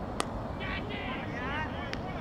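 One sharp crack, a cricket bat striking the ball, followed by players' shouted calls and another short click near the end.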